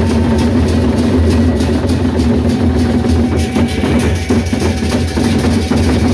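Sasak gendang beleq ensemble playing: large double-headed barrel drums beaten with sticks in a fast, dense, continuous rhythm, together with the group's metal percussion.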